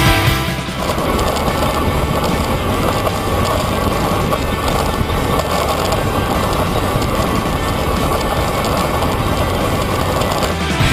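A road bike rolling down a mountain road: steady wind and tyre-on-asphalt noise picked up by a camera mounted on the bike.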